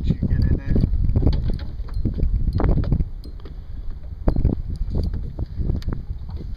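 Wind buffeting the microphone, a heavy, uneven low rumble, with a few faint snatches of voices.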